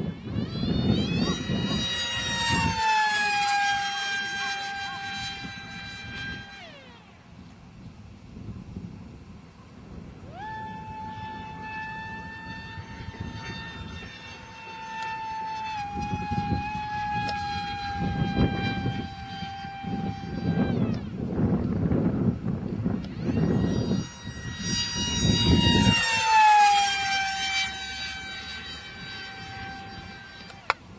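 Multiplex Funjet electric pusher RC jet in flight: its HXT 2845 2700kv brushless motor and APC 5x5 propeller give a high-pitched whine. The whine comes in three passes, and drops sharply in pitch as the plane goes by, once near the start and again near the end. A low, gusty rumble runs underneath.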